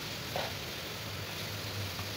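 Faint, steady sizzle of oncom and chillies stir-frying in an aluminium wok, turned with a silicone spatula, as the absorbed liquid is cooked off until dry.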